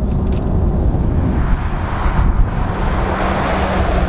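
Cabin noise inside a moving 2017 Ford F-150 Raptor: a steady low rumble from its 3.5-litre twin-turbo V6 and tyres on the road.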